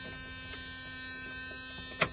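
Steady electrical buzz with a hum under it in the cab of a 1997 Dodge Ram with the ignition key still in, no engine running.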